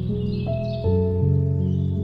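Slow, calm instrumental background music of sustained low chords with single notes entering above them, and high birdsong chirps mixed in early on. The music starts to fade out near the end.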